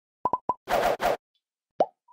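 Animated logo sound effect: three quick pops, two short whooshes, then a final pop that rises in pitch like a bubbly 'bloop'.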